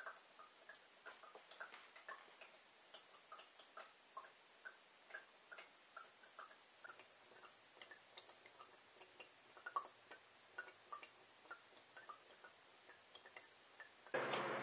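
Filtered water dripping from the bottom of a stacked tuna-can sand, gravel and activated-carbon filter into a glass of water: a steady string of faint, irregular plinks, about two or three a second.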